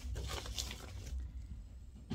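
Packaging rustling and crinkling as a snack packet is handled and taken from a gift box: a run of short crackles that thins out toward the end.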